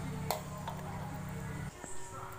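Metal spatula clicking and scraping against an aluminium wok while stir-frying noodles, with a sharp clack about a third of a second in and a few lighter clicks after. A steady low hum underneath cuts off shortly before the end.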